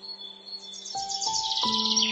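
Soft piano music, with a few notes struck about a second in, laid over bird song: a fast trill of high notes, falling in pitch, that comes in about half a second in and grows louder toward the end.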